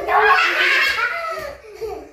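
Young children laughing loudly together, dying away about a second and a half in.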